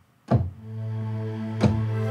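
Roland software synthesizer preset played on a keyboard: a sharp attack about a third of a second in settles into a steady, bright, clear held tone with rich overtones, and a second sharp attack comes near the end.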